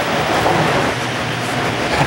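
A steady, fairly loud rushing noise with no distinct strokes or pitch, sustained through a pause in speech.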